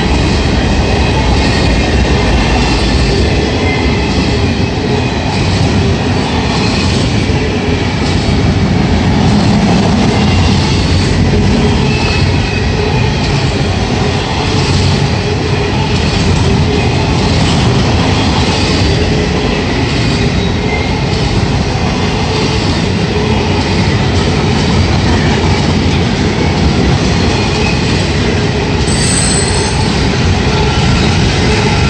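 Norfolk Southern intermodal freight cars rolling past close by: a steady, loud rumble of steel wheels on rail with a regular clicking about once a second.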